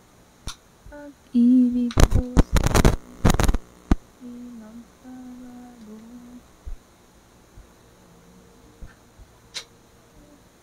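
A woman humming a few short, steady notes close to a microphone, broken by a cluster of loud knocks and bumps about two to three and a half seconds in, typical of handling the microphone and its cables; a single click comes near the end.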